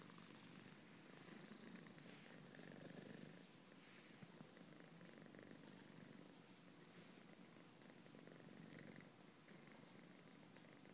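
A domestic cat purring faintly and steadily, a low hum that swells and eases every couple of seconds; the cat is content while its paws are being massaged.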